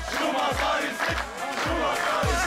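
Celebration chant song: a group of male voices chanting over a beat of deep bass hits that drop in pitch, about two a second.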